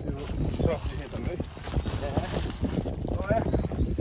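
Wind rumbling unevenly on the microphone, with brief snatches of voices partway through.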